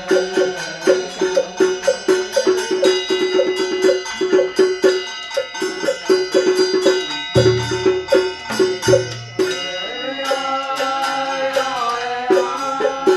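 Ceremonial percussion music: rapid, evenly spaced pitched knocks with short quick rolls, and a few deep drum strokes near the middle. A sustained melodic line comes in near the end.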